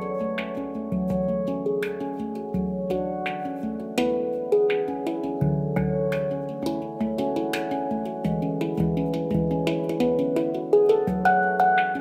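Ayasa handpan in F#3 Low Pygmy tuning, 21 notes, played with the fingers. It gives a steady flow of struck notes that ring on and overlap, with a low bass note coming back every few seconds.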